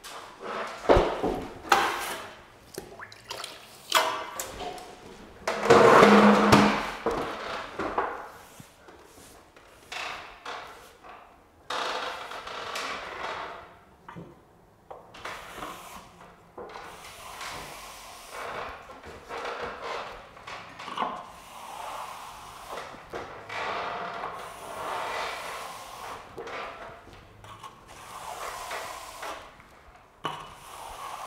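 A wide water brush being worked over freshly skimmed plaster to wet it for the final troweling, in a long run of irregular brushing strokes. A few louder knocks and splashes come in the first several seconds.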